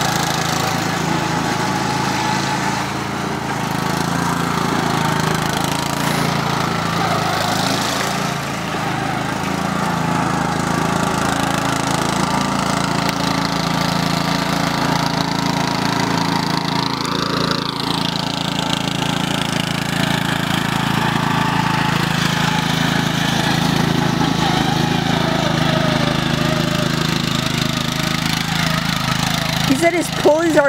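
Riding lawn mower's engine running steadily under load as it drives across soft dirt, its pitch rising and dipping slightly with the throttle.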